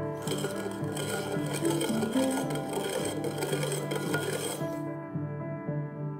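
Ice rattling hard inside a two-piece metal tin cocktail shaker, shaken steadily for about four and a half seconds and then stopping: the wet shake with ice that follows a dry shake of egg white. Background music plays throughout.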